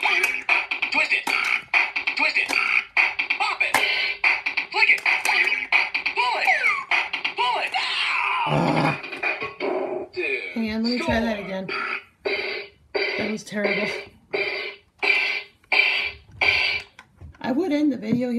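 Bop It Extreme electronic toy playing its beat track and spoken commands as it is played, for about the first half. About halfway through, a falling electronic glide sounds and the beat stops. A string of short, evenly spaced electronic tones follows, about two a second.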